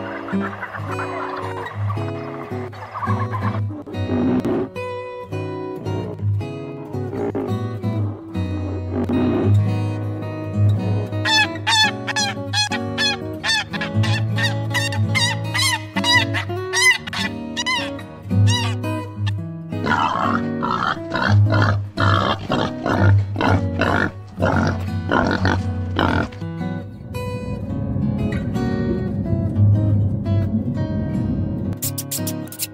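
Background guitar music, with short, repeating bird calls mixed in over it through the middle part.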